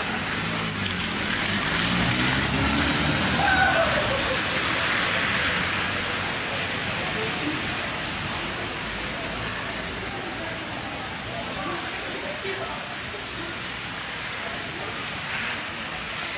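Steady hiss of a wet street in falling wet snow, a little louder in the first few seconds, with faint, indistinct voices of people nearby.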